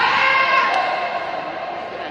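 A loud, high-pitched yell that starts suddenly, rising in pitch at the outset, is held for about a second and then fades.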